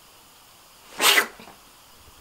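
A single short, sharp burst of breath from a person, about a second in.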